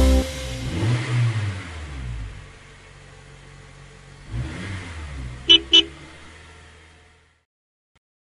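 Cartoon bus sound effect: an engine rumbling and revving with a wavering pitch, then two quick horn beeps about five and a half seconds in, all fading out to silence.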